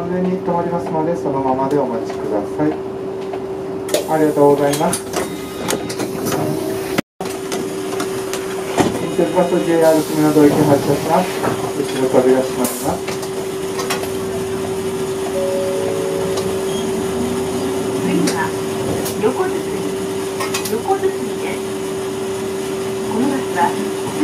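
Bits of a bus driver's voice over a steady hum inside a city bus.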